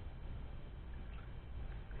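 Faint splashing and dripping of lake water as a bass is rinsed over the side of a boat.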